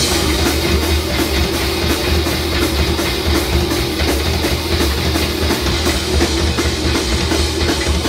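A live metal band playing loud: electric guitars, bass and a drum kit, with fast, evenly repeated drum and cymbal hits running under the guitars.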